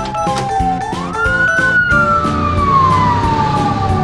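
An ambulance siren wailing: its pitch sweeps up about a second in, then falls slowly through the rest, over background music with a steady beat.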